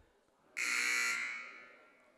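Basketball scoreboard horn sounding once, a harsh steady buzz held for about half a second, then fading away over the next second with the gym's echo.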